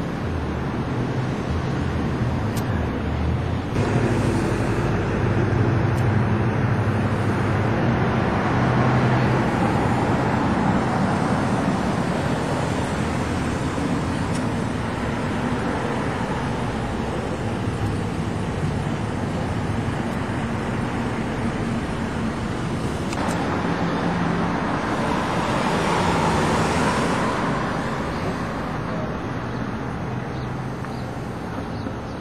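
Road traffic: cars driving past steadily, with a louder pass starting about four seconds in and another swelling up around twenty-five seconds before fading.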